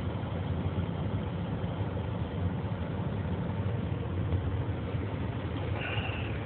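Semi-truck's diesel engine idling, heard from inside the cab as a steady low rumble.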